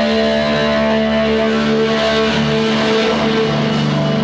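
Live indie rock band playing, led by electric guitars sustaining chords through effects, the chord changing about two and a half seconds in. Recorded to cassette.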